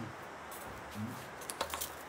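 Quiet room tone with a few faint, sharp clicks close together near the end.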